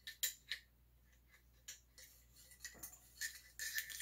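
Faint, light metallic clicks and scrapes of a sectioned GI steel cleaning rod being worked through a 20-inch rifle barrel with a patch, a few near the start and a quick run of them near the end.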